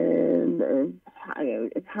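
A person's voice over a telephone line: a long drawn-out hesitation sound for about the first second, then more broken speech.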